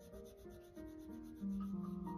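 A paintbrush rubbing on watercolour paper as a swatch is painted, under soft background music of slow held notes that grows louder about one and a half seconds in.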